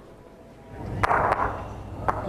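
A driven lawn bowl crashing into the head on an indoor carpet green: two sharp clacks of bowls striking each other and the jack about a second in, over the crowd's swelling noise.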